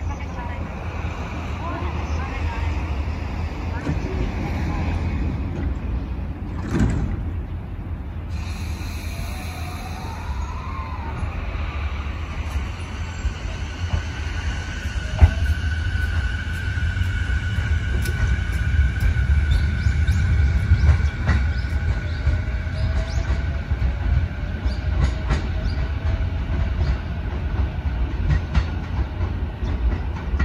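JR East E233-series Keiyo Line electric train pulling out of the station under a steady low rumble. From about ten seconds in, the motor whine glides up, then settles into steady tones as the train gathers speed.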